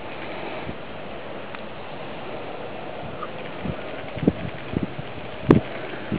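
Homemade HHO electrolysis cell running: a steady fizzing hiss as gas bubbles stream off the electrodes through the electrolyte. A handful of short clicks come in the second half, the sharpest near the end.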